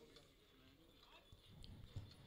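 Near silence, with a few faint knocks near the end.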